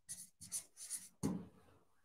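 Marker pen writing a word on a white board surface: a quick run of short, quiet strokes, with a longer, louder stroke a little past a second in.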